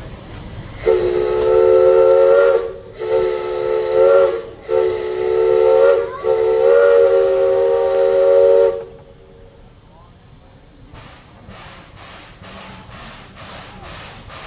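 Steam locomotive's chime whistle sounding a chord in four blasts, the last one longest. A couple of seconds later the exhaust starts chuffing in an even beat of about two to three strokes a second.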